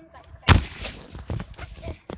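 Handheld camera or phone being handled: a sharp thump on the microphone about half a second in, then rubbing and smaller bumps as fingers move over it.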